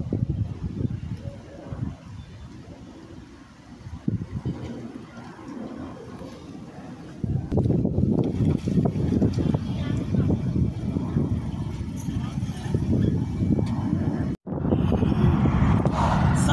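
A car driving up the street. Its engine and tyre noise grow into a louder, steady low rumble from about seven seconds in as it comes close, and the sound breaks off at a cut near the end.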